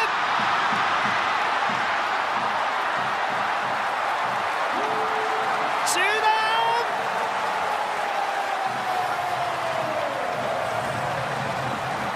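Baseball stadium crowd cheering loudly and steadily for a home run to right field, slowly dying down. A broadcast announcer's voice rises over it about five seconds in and holds one long drawn-out call that sinks slowly in pitch.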